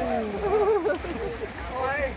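Several people's voices calling and talking over one another, the words not clear.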